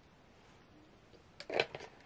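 A person drinking water from a plastic bottle: quiet at first, then, about a second and a half in, a short cluster of clicks and breath as the drinking ends.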